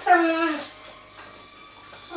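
A dog's whining cry: one drawn-out note of about half a second at the very start, dropping slightly at its end, during rough play-fighting between two dogs.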